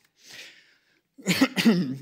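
A man coughing twice in quick succession, a little past a second in.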